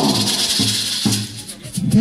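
A pair of maracas shaken in rhythm, a dense rattle at first and then sharp separate shakes in the second half. Low male backing voices sing underneath in an a cappella rock'n'roll arrangement.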